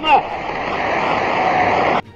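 A large audience applauding: dense, steady clapping on an old film soundtrack. It breaks in just as a man's shouted speech ends.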